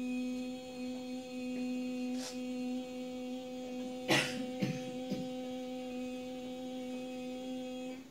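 A woman's voice holding one steady hummed note for the whole stretch, cutting off sharply at the end, as a sound-healing tone. A few sharp clicks come about four to five seconds in.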